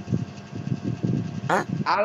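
Live-stream voice-chat audio: a low crackly background with a faint steady hum from the open microphones, then a man asks "Hah?" about a second and a half in.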